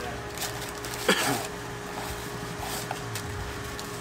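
Table sounds of eating at a restaurant: small clicks and rustles as fries are picked from paper-lined baskets, over a steady electrical hum. A short vocal sound with a sharp onset about a second in is the loudest moment.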